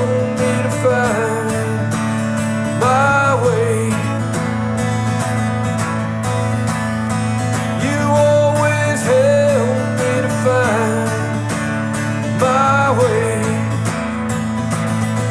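Acoustic guitar strumming steady chords under a harmonica melody with bent, wavering notes, in repeated phrases of about a second each.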